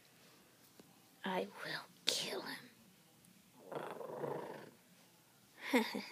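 A person's voice making a few short wordless sounds, one gliding up and down in pitch about two seconds in. A breathy, whisper-like stretch follows in the middle, with quiet gaps between.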